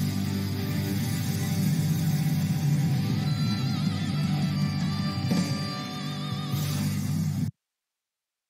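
Live concert band music, a slow ballad with bass guitar and drums, that cuts off suddenly near the end.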